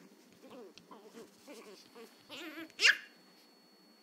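Chihuahua puppy growling and grumbling in short bursts, then letting out one sharp, high-pitched bark about three seconds in.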